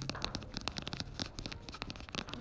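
Chalk writing on a blackboard: a quick, irregular run of taps and scratches as the strokes go down.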